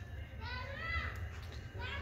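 A child's high-pitched voice in the background, one short call about half a second in that bends up and down, over a steady low hum.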